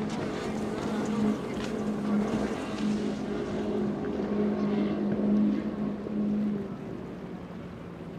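Twin Mercury 300 R outboard motors running at speed, a steady drone over the hiss of hull spray and wind on the microphone. The drone swells as the boat passes and fades away after about six and a half seconds as it runs off.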